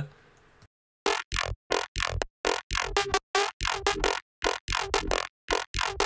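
Neurofunk-style synthesized bass loop, built in Ableton's Operator FM synth, playing back. After about a second of silence it starts as a fast run of short, choppy stabs with hard gaps between them, roughly four or five a second.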